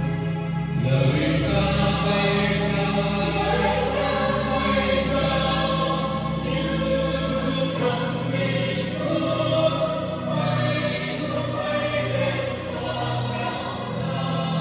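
Church choir of mostly women's voices singing a Vietnamese hymn in sustained, held lines. Low bass notes sound beneath the voices and drop out about halfway through.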